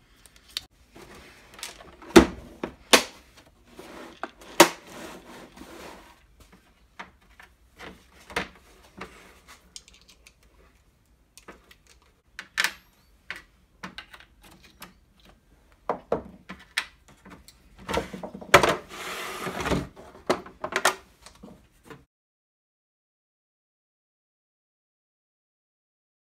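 Plastic clicks and knocks from a Dremel accessory case being opened and bits and tool parts handled on a wooden workbench, with two spells of rummaging noise. The sound stops a couple of seconds before the end.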